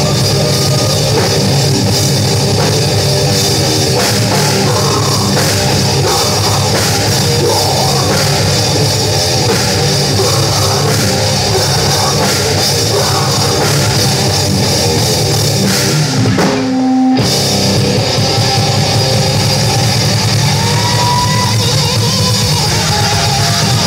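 Heavy metal band playing live: distorted electric guitar, bass and drum kit, loud and dense, with a short break about sixteen seconds in before the band comes back in.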